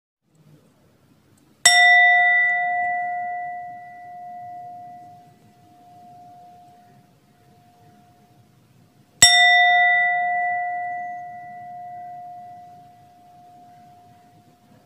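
A singing bowl struck twice, about seven and a half seconds apart; each strike rings on with one clear tone that fades slowly, its level swelling and ebbing as it dies away.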